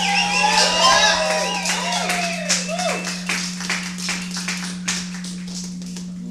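Small audience cheering and whooping at the end of a song, then scattered clapping that thins out toward the end. A steady low electrical hum runs underneath.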